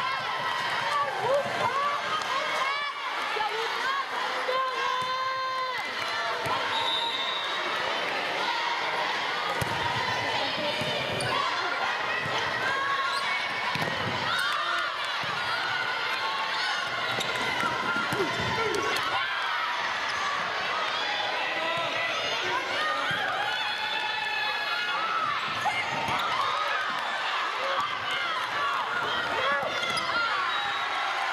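A volleyball being hit and bouncing on a hardwood gym court, with several dull thumps in the middle. Players' calls and crowd voices from the stands run throughout.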